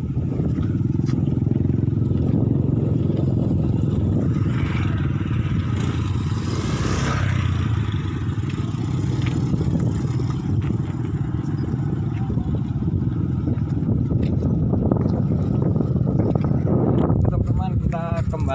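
Strong wind buffeting the microphone, a steady low rumble; partway through a louder hiss swells up and fades.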